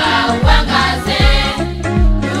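Gospel song: a choir singing over a backing track with a steady kick-drum beat, about two beats a second.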